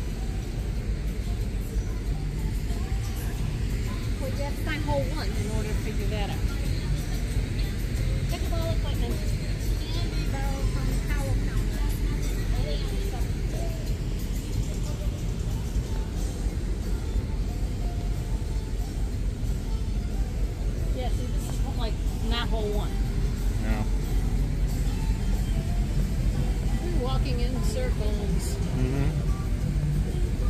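Faint voices and music in the background over a steady low rumble.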